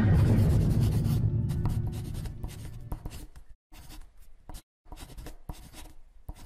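Marker pen scribbling on a board in short scratchy strokes with brief pauses between them. A deep opening sound dies away over the first two to three seconds.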